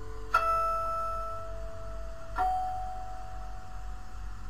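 Closing notes of the song's instrumental backing track: two single notes struck about two seconds apart, each ringing on and slowly fading as the song ends.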